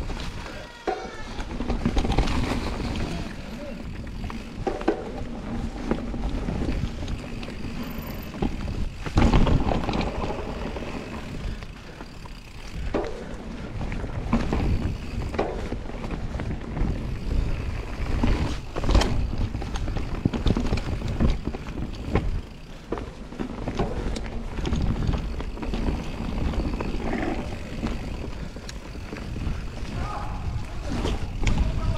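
Enduro mountain bike ridden fast down a forest singletrack. Tyres roll over packed dirt and dry leaves with a steady rumble, wind rushes over the microphone, and the bike clatters and knocks over bumps and roots, with the hardest knocks about nine seconds in and near the middle.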